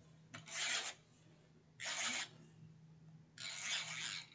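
Three short rasping strokes of an Xfasten tape runner laying dotted adhesive along white cardstock, each about half a second long.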